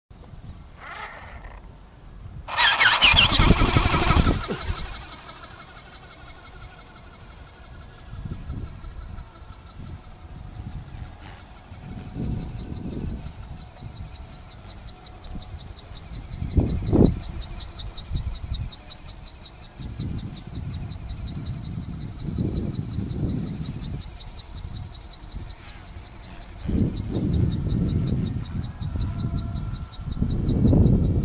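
A steady high whine, typical of a radio-controlled model aircraft's small electric motor running in flight, with repeated gusts of wind buffeting the microphone. A loud rush of noise comes about two and a half seconds in, before the whine settles.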